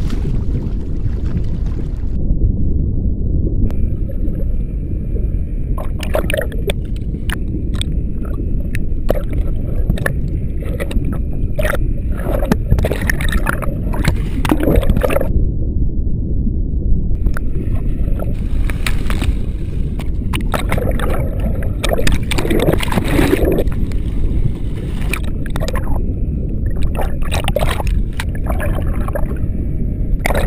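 Water sloshing and splashing in irregular bursts over a steady low rumble. The splashing drops out twice for a second or two, leaving only the rumble.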